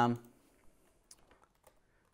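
A man's drawn-out "um", then a few faint, scattered clicks from computer input as he sets up to type a chat message.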